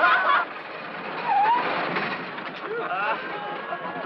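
Police motorcycle and three-wheeled trike engines running as the two ride off, with men's voices laughing and calling out over them; a burst of loud voices breaks off about half a second in.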